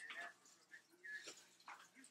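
Near silence: room tone with a few faint, brief distant sounds.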